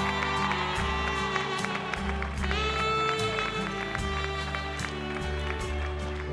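A live band playing music with a steady beat: drums with regular cymbal strokes, a moving bass line and held melody notes.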